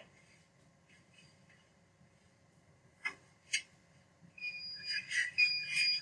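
Two sharp clicks, then a high, steady whistle-like tone that sounds in two stretches over rustling noise near the end.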